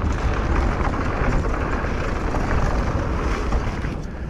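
Steady rush of wind on the microphone of a mountain bike's action camera, mixed with the tyre noise of the bike riding at speed on a dry dirt trail.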